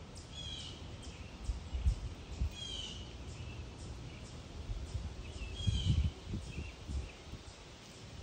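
A songbird giving a short call three times, a few seconds apart, over steady outdoor background noise, with irregular low rumbles of wind or handling on the microphone.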